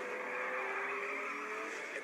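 A vehicle engine sound effect from a film soundtrack: a drawn-out whine that rises slightly in pitch, over a steady noisy bed, heard through a TV speaker.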